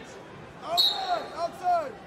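Wrestling shoes squeaking on the mat as the wrestlers move, a series of short squeaks with a brief higher chirp a little under a second in.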